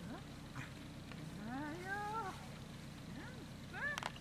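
Dog whining as it heels at the handler's side: a long whine that rises and then falls about a second and a half in, with a shorter rising whine near the end. This is the unwanted vocalising the handler is trying to train out of the dog.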